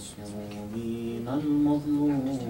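A man's voice chanting in long, drawn-out melodic notes, with the pitch sliding between held tones and stepping up near the end, in the manner of Arabic religious recitation.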